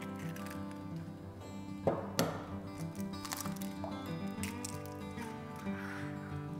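Soft background music with held notes throughout, and a couple of short sharp cracks about two seconds in from an egg being broken into a glass jug of milk.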